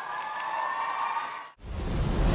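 Studio audience applauding and cheering, with a soft held musical note underneath, cut off suddenly about one and a half seconds in. Loud theme music with a heavy bass starts right after the cut.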